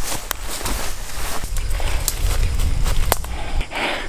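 Footsteps moving through grass, with a steady low rumble under them that stops shortly before the end.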